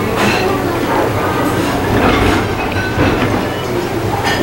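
A person chewing a mouthful of pan-fried gyoza, with a few short irregular mouth and tableware noises, over a steady low rumble of restaurant background noise.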